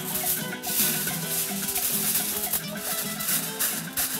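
Aluminium foil crinkling and rustling as it is crumpled and pressed into a grill pan, over background music with held notes.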